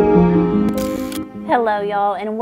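Soft intro music ends, and about two-thirds of a second in a camera-shutter sound effect lasting about half a second follows. A woman's voice starts near the end.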